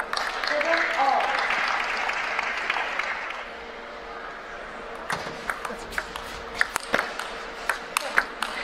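Spectators applauding, with a few voices, for about three seconds after a point ends. About five seconds in, sharp irregular clicks of a table tennis ball begin, bouncing on the table and off the rackets as the serve and rally get under way.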